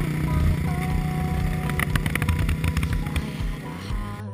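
Honda dirt bike's engine running through a Yoshimura exhaust, rough and uneven, with a run of crackles in the middle. Background music plays over it.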